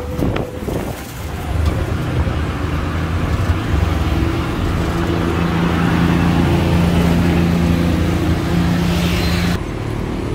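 Road traffic heard from inside an open-sided electric tuk-tuk while riding: a steady low engine drone with road and wind noise that swells a little midway and cuts off abruptly just before the end. The tuk-tuk's own electric drive is very quiet.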